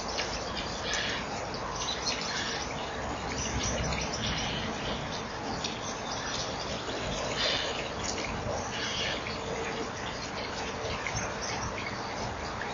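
Small birds chirping outdoors: short high calls at irregular intervals, a few seconds apart, over a steady background hiss.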